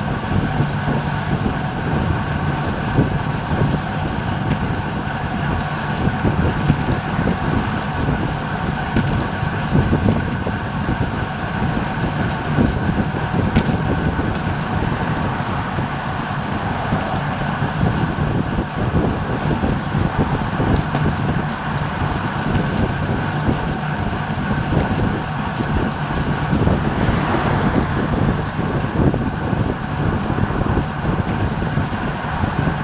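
Steady wind rush over the microphone of a camera mounted on a road bicycle ridden at about 22 mph, with road noise underneath.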